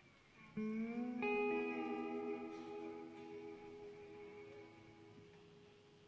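Guitar plucked, with a first note about half a second in that bends slightly upward. More notes join about a second in and are left to ring, fading away over the next few seconds.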